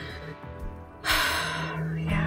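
A woman takes one long, heavy breath about a second in, a stressed sigh, over steady background music.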